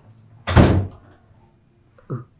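A door slamming shut once, about half a second in: a single loud bang that dies away quickly.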